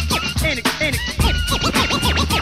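Turntable scratching over a late-1980s hip-hop drum beat and bass: a DJ scratch break between rap verses, the record swiped back and forth in quick rising and falling strokes.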